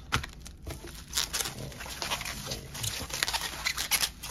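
Packing paper rustling and bubble wrap crinkling as a parcel is unpacked by hand, a run of irregular crackles.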